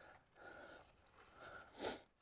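Near silence with a few faint puffs of breath-like noise, the loudest just before the end.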